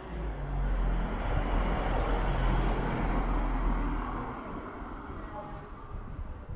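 A car driving past on the street: engine rumble and tyre noise swell within the first second, hold for a few seconds, then fade away from about four seconds in.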